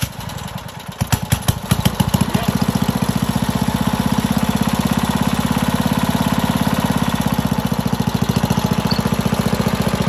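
Wisconsin ACN single-cylinder air-cooled engine on a Le Trac walk-behind crawler, pull-started on half choke. It catches on the first pull, fires unevenly for about two seconds, then settles into a steady idle.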